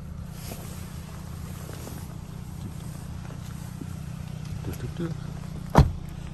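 Low steady rumble with faint shuffling, then one loud thump near the end as the rear passenger door of a 2023 Kia Sportage is shut.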